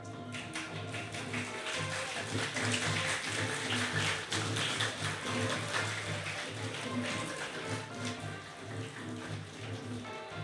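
An audience applauding over instrumental music. The clapping builds over the first couple of seconds and thins out toward the end.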